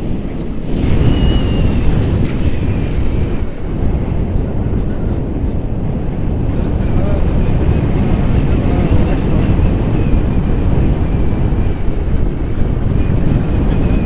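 Airflow buffeting an action camera's microphone during tandem paragliding flight, a loud, steady rushing noise. A faint, wavering high whistle comes and goes above it.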